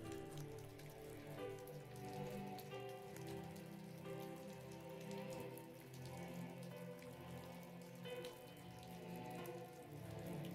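Faint ambient background music of soft held tones that change slowly, over a recorded rain ambience with many faint droplet ticks.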